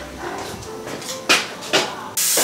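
A dog barking twice, two short barks about half a second apart.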